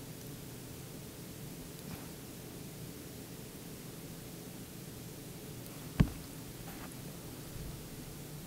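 Faint, steady background hiss of a quiet room, with one sharp click about six seconds in.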